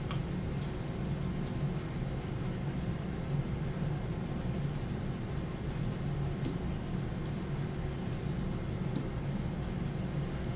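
Steady low hum and room noise, with a few faint taps.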